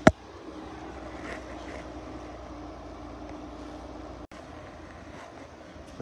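A sharp knock at the start, then a steady low hum of a vehicle running, with a faint steady tone. The sound drops out briefly about four seconds in.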